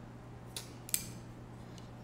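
Two light clicks, under half a second apart, of a small metal screw knocking against a carbon-fibre drone frame plate as it is fed through its hole.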